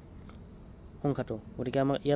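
A cricket chirping steadily in the background: a faint, fast, evenly pulsed high note. A man starts speaking about a second in.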